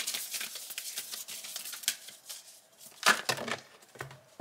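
A tarot card deck being shuffled by hand: a quick run of papery card clicks and riffles that thins out after about two seconds, then one louder slap of cards about three seconds in.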